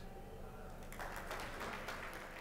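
Audience applause, thin at first and picking up about a second in as more hands clap.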